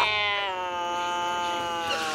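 Cartoon cat's long drawn-out yowl: one held note that slowly falls in pitch for nearly two seconds.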